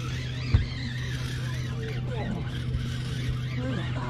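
Fishing reel drag paying out line as a hooked sturgeon runs, over a steady low hum, with a single sharp knock about half a second in.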